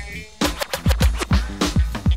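Late-1980s hip hop instrumental beat with no vocals: deep drum-machine kicks that drop in pitch, several a second, with DJ record scratching over them. The beat thins out briefly just after the start.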